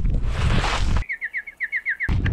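About a second of loud rushing noise, then an abrupt cut to a bird-tweet sound effect: a quick run of about eight high, slightly falling chirps, covering a censored word.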